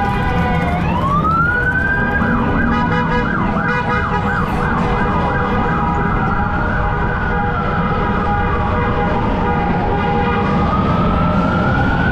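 Emergency-vehicle siren sounding over the low rumble of motorcycle engines. It wails up about a second in, switches to a fast warbling yelp for a few seconds, then falls slowly and rises again near the end.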